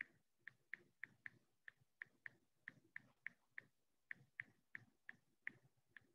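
Faint, irregular light clicking, about three or four clicks a second, some coming in quick pairs.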